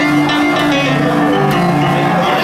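Upright piano with an open front playing a blues without vocals: a steady run of chords and a repeated low figure.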